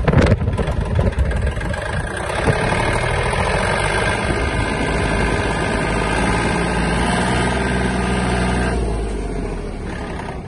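Kubota L1-185 mini tractor's diesel engine pulling steadily in top (fourth) gear as the tractor drives off and gains speed, with a short knock right at the start.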